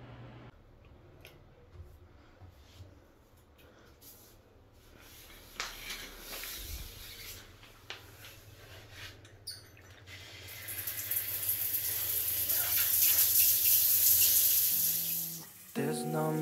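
A chrome cross-handle shower tap handled with a few clicks, then shower water running: a steady, loud hiss of spray that starts about ten seconds in. Music begins right at the end.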